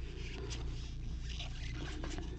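Trading cards sliding and scraping against one another as gloved hands flip through a stack: a few short, irregular rustles over a steady low hum.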